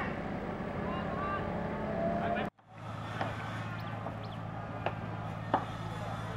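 Voices calling over a steady motor hum, broken off abruptly about two and a half seconds in. Then the steady low drone of a river ferry's engine under way, with a few short high sounds over it.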